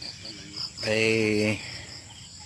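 Insects chirping in a steady pulsing trill, about five high pulses a second, with a man's drawn-out "ay eh" in the middle.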